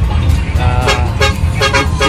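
Steady engine and road rumble of a moving bus heard from inside the passenger cabin, with background music over it.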